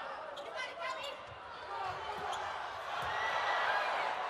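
Sharp smacks of a volleyball being served and played during a rally, over indoor arena crowd noise that swells toward the end.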